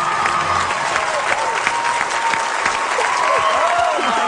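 Studio audience applauding, a dense and steady sound of many hands clapping.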